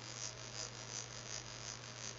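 Faint steady electrical hum with low hiss: the background noise of the recording between spoken words.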